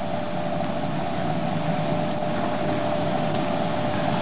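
Steady hiss with a constant mid-pitched hum, switching on abruptly at the start: background noise of an old film sound track.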